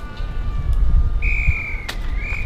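Wind rumbling on the microphone. In the second half a clear, high, whistle-like tone is held for under a second, and it ends with a sharp click.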